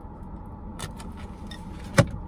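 Low steady rumble of a car heard from inside its cabin, with a faint steady tone above it. A few light clicks come through, and one sharp click at the very end.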